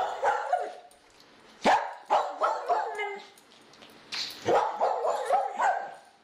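A dog barking and yipping in three bouts of short calls: one at the start, one about two seconds in, and a longer one from about four seconds in.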